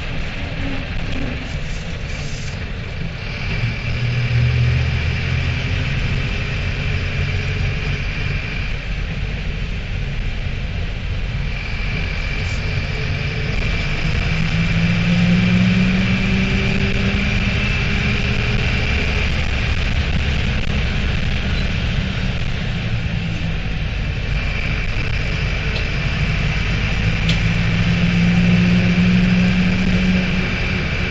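Mercedes-Benz LO-914 minibus's OM904 four-cylinder diesel running under way, heard from on board. The engine pitch rises twice as it pulls, about halfway through and again near the end, with a steady high whine above it.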